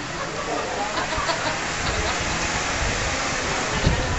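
A group of people's voices and laughter, not clearly worded, over a steady hiss.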